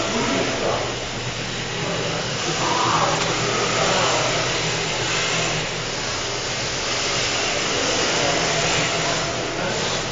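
Several 2WD radio-controlled drift cars running around an indoor track, their electric motors whirring and tyres sliding on the smooth floor as a steady, even noise.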